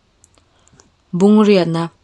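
A narrator's voice: a short pause with a few faint clicks, then one drawn-out spoken word about a second in.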